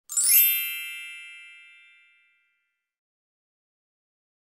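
Intro sound effect: a single bright metallic ding with a quick shimmering onset, ringing out and fading away over about two seconds.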